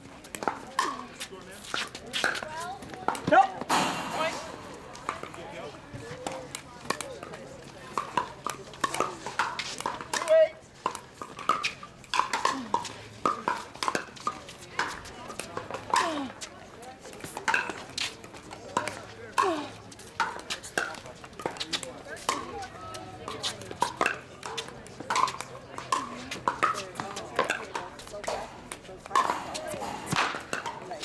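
Pickleball paddles hitting a hard plastic ball, repeated sharp pocks at irregular intervals through the rally. Spectators murmur and chat in the background.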